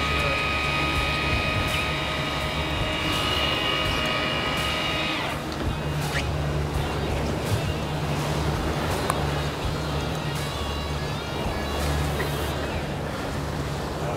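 An electric fishing reel winding in line with a steady high whine that cuts off about five seconds in. Underneath, the boat's outboard engines run with a steady drone over the rush of wake water and wind.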